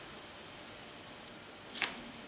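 Faint felt-tip pen writing on paper over a steady low hiss, with one short, sharp scratch near the end.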